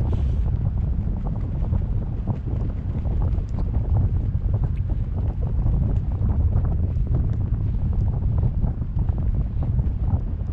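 Wind buffeting the microphone of a camera on a parasail rig in flight: a steady low rumble with no let-up.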